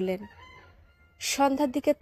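Narrator's voice reading the story aloud, ending a phrase, pausing for about a second, then speaking again.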